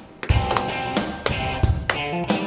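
Instrumental music with guitar over a steady drum beat, which plays as the show's return music.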